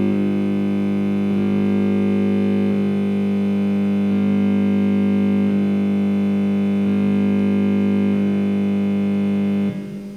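Electronic synthesizer drone: a steady low tone held under higher notes that shift about every second and a half, cutting off abruptly near the end.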